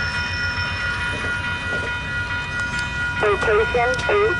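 VIA Rail passenger cars rolling past over a level crossing: a steady low rumble and clatter of wheels on the rails, with a steady whine above it. A voice starts speaking near the end.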